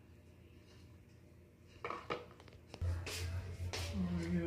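Quiet room tone, then a few short clicks and knocks of handling, and from about three seconds in a steady low hum with a couple of louder rustling bursts.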